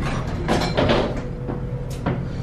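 Elevator running: a steady low hum with a few knocks in the middle and a sharp click just before the end.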